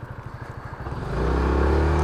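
Yamaha Majesty maxi scooter's single-cylinder engine running at a low, evenly pulsing idle, then opening up and getting louder about a second in as the scooter pulls away.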